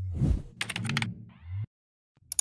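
Channel-intro animation sound effects: a whoosh, then a quick run of sharp clicks like typing, and a short swish, cutting off suddenly to silence near the end.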